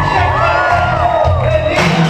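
Old-school hip-hop backing track with a repeating bass beat, played loud in a hall. A voice glides up and holds a long note in the middle, and a short burst of crowd cheering and whooping comes near the end.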